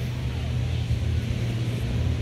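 Steady low rumble of wind blowing across a phone's microphone, with a light hiss above it.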